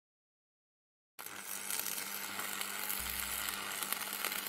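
Silence for about a second, then a steady crackling, sizzling hiss from an intro sound effect of burning embers, with a faint low hum beneath it.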